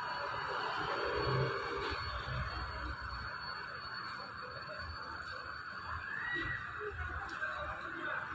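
Steady background ambience of an open-fronted food stall: an even noise with faint, scattered low thumps and no single sound standing out.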